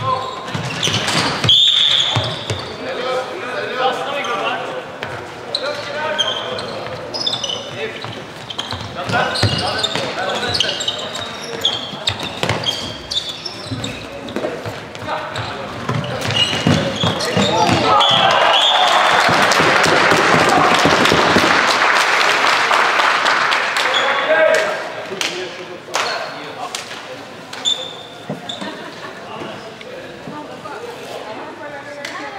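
Indoor floorball game: players calling out, sticks knocking the ball and short high squeaks on the hall floor. About eighteen seconds in, a loud burst of cheering and clapping runs for several seconds as a goal is scored, then dies away to play sounds.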